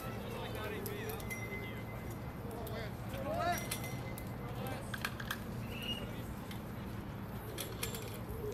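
Faint, distant voices of players and spectators at a baseball field, over a steady low hum, with a few light clicks.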